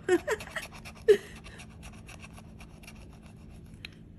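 A woman laughs briefly, then a scratcher tool scrapes the coating off a scratch-off lottery ticket in many quick, faint strokes.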